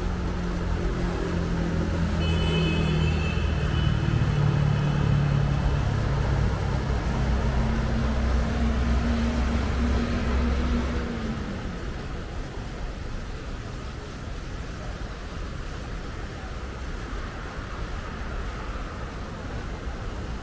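Road traffic on the street below, with a heavy vehicle's engine hum loudest for the first eleven seconds and then dying away, leaving a steadier, quieter traffic noise.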